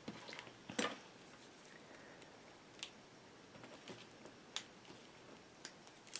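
Faint, scattered small clicks and taps of a small disc magnet being handled and set down on cardstock, the loudest just before a second in.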